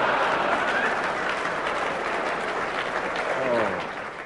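Audience applauding. The applause dies away near the end, with a voice briefly heard over it.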